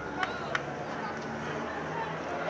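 Open-field ambience of a junior Australian rules football match: distant players and spectators calling out, with two sharp knocks about a third of a second apart early on the ball's loose play.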